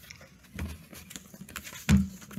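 Handling noise from a paperback picture book being moved and its page turned: soft rustles and light knocks, with one louder thump near the end.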